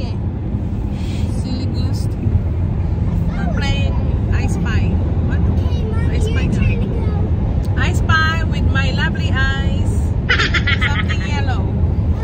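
Steady low road and engine rumble inside a moving car's cabin, with voices talking over it at intervals.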